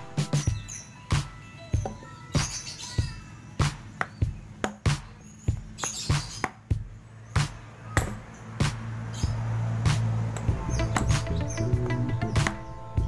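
Irregular sharp knocks from a worn piston skirt being struck against a cloth-wrapped wooden block to press it tight, over background music with birds chirping.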